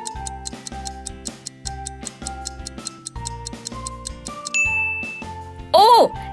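Countdown-timer background music: a clock-like ticking runs steadily under light sustained notes and a pulsing bass. A high ding sounds about two-thirds of the way through, and a brief loud voice-like sound effect comes just before the end.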